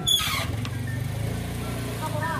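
An engine running steadily at idle, a low even hum, after a short loud noisy burst at the very start.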